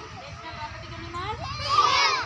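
A group of young children's voices calling out and chattering together, swelling into a loud group shout near the end.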